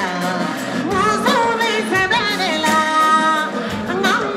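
A woman singing lead into a microphone over a live band with drums, her line full of sliding turns and a long held note about three seconds in.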